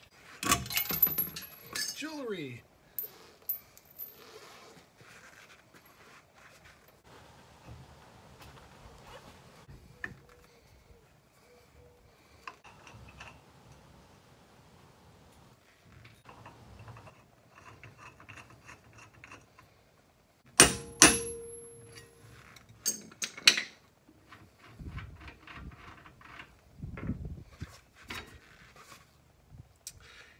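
Hand-tool work on the rear wheel of a Ford Model A: metal clinks from a lug wrench early on, then light handling noises. A few sharp metal strikes with a ringing tone come about two-thirds of the way in, consistent with hammering the taper-fit rear brake drum loose with a puller.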